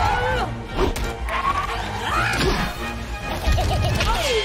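Animated film soundtrack: music under a run of slapstick crash and whack effects, with short swooping vocal sounds.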